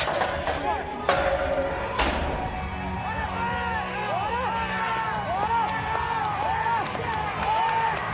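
Bull-riding arena as a bucking chute gate bangs open, followed by two more sharp knocks within the first two seconds. Then a string of short rising-and-falling whoops and yells over background music while the bull bucks.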